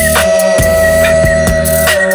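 Multi-tracked human beatbox, every part made by mouth: a long held melodic note rides over a beatboxed drum beat of sharp kick and snare strokes and a low bass line.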